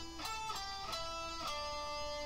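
Electric guitar playing a slow run of single notes, each held about half a second before the next.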